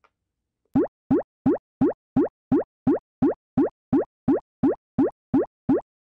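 A cartoonish 'bloop' sound effect repeated evenly about three times a second, starting about a second in. Each bloop is a short, quick upward slide in pitch.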